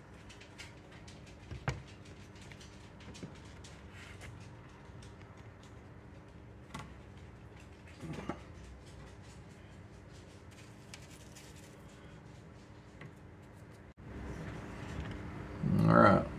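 Quiet room with a faint steady hum and a few light knocks and clicks from a phone camera being handled and repositioned. The background noise steps up abruptly near the end.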